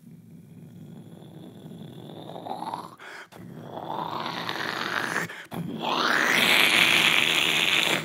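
A man's voice making wordless vocal sound effects: three surges of breathy, rushing noise with short breaks between them, each rising in pitch and louder than the last. The final, loudest surge stops suddenly near the end.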